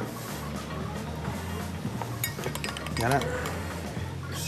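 A wooden pestle working in a glazed ceramic mortar, with a few sharp clinks a little over two seconds in, over background music.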